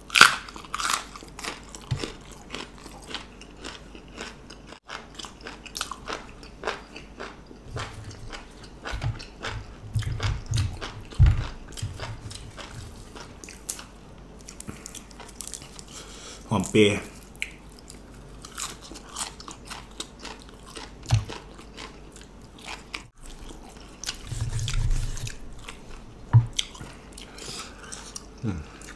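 A person chewing and crunching crisp raw vegetables close to the microphone, with many small crunches and mouth clicks, and a few low thumps around ten seconds in and again later on.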